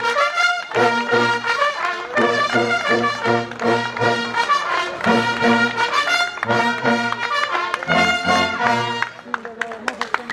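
Bersaglieri-style military brass fanfare, trumpets and trombones, playing a lively tune in full ensemble. The music stops about nine seconds in.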